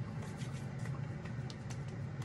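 Steady low background hum, with a few faint soft taps of hands patting cream into the skin of the face.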